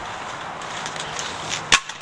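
Steady outdoor noise with a single sharp knock near the end, as the handheld camera is moved and bumped.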